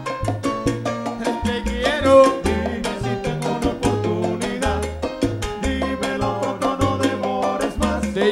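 Live salsa band playing, with upright bass notes and hand percussion keeping a steady beat under the band.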